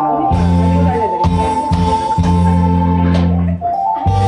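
Trot karaoke backing track playing an instrumental passage: a steady bass line with guitar and a long held lead note, no singing.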